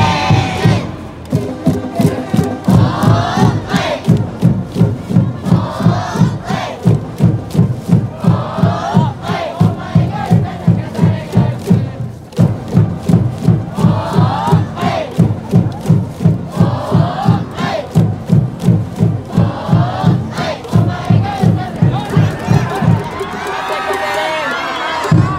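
A high-school cheering section chanting and shouting in unison in short calls about every two seconds, over a steady drum beat of roughly two to three strokes a second. The drum and chanting stop near the end.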